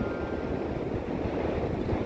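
Wind buffeting a phone microphone outdoors, a steady low rumbling noise with no distinct events.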